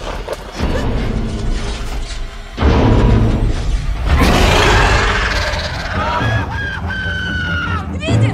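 Action film soundtrack: a deep rumble under an orchestral score, a loud burst about four seconds in, and a high drawn-out scream over the last two seconds.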